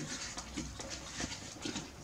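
Faint, irregular small clicks and creaks of headboard bolts being tightened by hand against wooden headboard struts.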